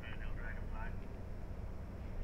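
A faint, distant voice in the first second, over a steady low rumble.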